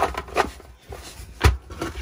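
Polymer AR-15 magazines (PMAGs) knocking and clacking against one another and the plywood tabletop as they are packed into a nylon dump pouch, with fabric rubbing between the knocks. There are several knocks, the loudest about a second and a half in.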